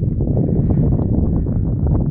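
Wind buffeting the microphone outdoors: a loud, steady low rumble.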